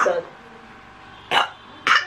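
Two short coughs about half a second apart, in the second half.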